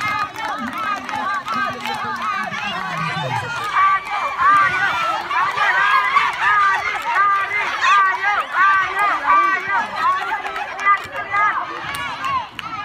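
A group of women shouting and calling out over one another, many high voices overlapping throughout.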